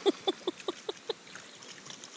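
A golden retriever giving a quick run of short yelps, about five a second, that fade out about a second in, leaving the faint trickle of river water.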